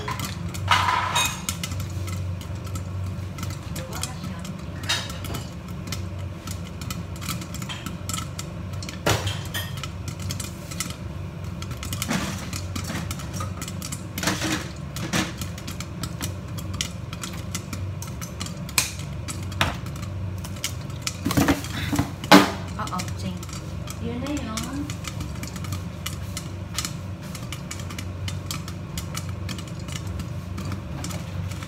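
Popcorn popping in a lidded stainless steel pot on a gas stove: scattered single pops a second or more apart over a steady low hum, the pot nearly full and the popping thinning out. The loudest pops come in a quick cluster a little past two-thirds of the way through.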